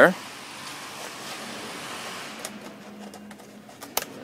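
Thin plastic puzzle-lamp pieces being bent and hooked together by hand, giving scattered small clicks and rustles that grow busier from about halfway, with one sharp click near the end as a piece snaps into place.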